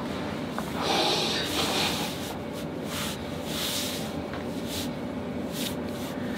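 A person breathing slowly and audibly, with soft breath swells loudest about a second in and again near four seconds in.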